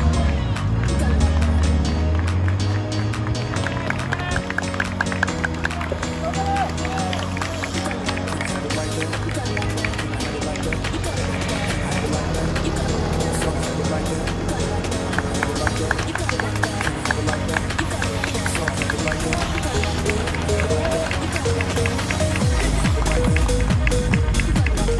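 Electronic pop music with a steady beat and held bass notes.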